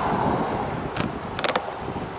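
Wind rushing over the microphone as a kayak moves across the water, a steady low rumbling hiss. A short click comes about a second in, then a quick run of light clicks or creaks from the kayak's gear.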